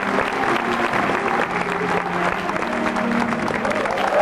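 Audience applauding steadily, with program music still playing faintly beneath the clapping.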